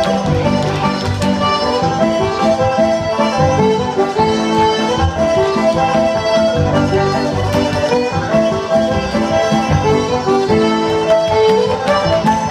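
Live Irish traditional dance music from a small céilí band, a melody over a steady beat, played for set dancing.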